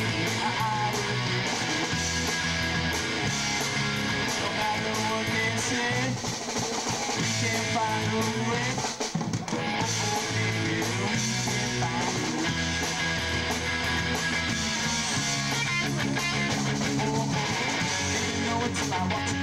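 Live rock band playing: electric guitar, bass guitar and a drum kit going steadily together, with a brief drop in loudness about nine seconds in.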